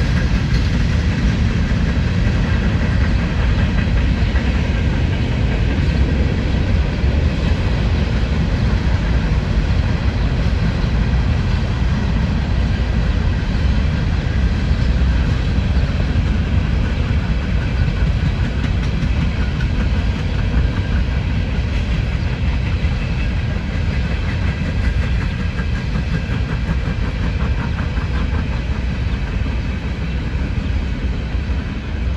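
Freight train of open-top hopper cars rolling past, a steady noise of steel wheels running on the rails, easing slightly near the end.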